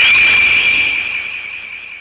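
A high, whistle-like tone that slides up briefly, then holds one pitch and fades away over about two seconds: a sound-effect sting marking the episode's title card.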